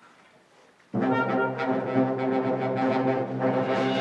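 A concert band comes in suddenly about a second in with a loud, held brass chord, the low brass prominent.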